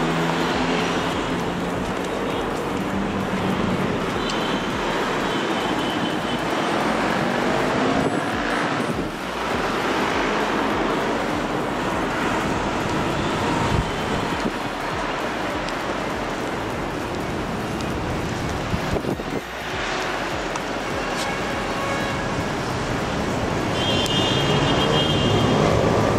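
Steady hum of busy city road traffic, growing somewhat louder near the end.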